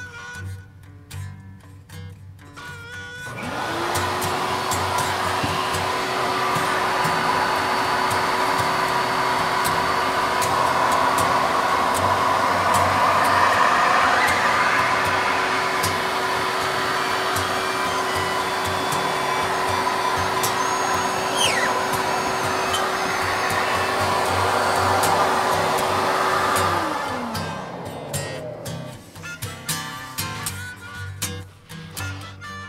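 Screen-printing vacuum table's suction motor switching on about three seconds in, running steadily with a hum and rushing air, then switched off near the end, its pitch falling as it spins down.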